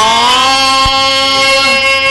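A man singing one long held note in a stage-drama song. The pitch slides up at the start and then holds steady, with one short low thump about a second in.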